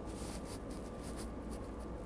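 Steady low hum inside a SEPTA Regional Rail passenger car, with a faint thin whine running through it and no distinct knocks or clanks.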